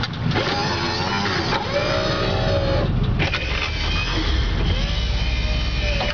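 Power window motors of a 1977 Oldsmobile Cutlass Supreme running, a whine that changes a couple of times as the windows move, over the steady idle of its 350 Oldsmobile V8.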